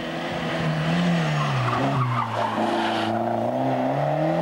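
Rally car passing close at speed. Its engine note rises, dips about one and a half seconds in, then climbs again. A loud hiss of tyre noise runs with it and cuts off about three seconds in.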